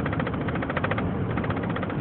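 Car cabin noise while driving: a steady low engine and road rumble, with a fast, even rattling flutter over it.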